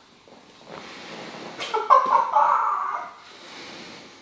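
A woman's pained whimpering moan, about a second long, starting about two seconds in, drawn out by firm hand pressure into tense back muscles.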